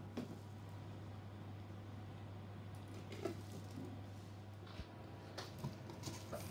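Quiet room tone: a steady low hum with a few faint, short knocks and rustles from hands working at a table.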